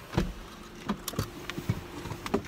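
A handheld phone camera being moved and handled inside a car: a few scattered soft knocks and bumps. A faint steady hum begins under them about a third of the way in.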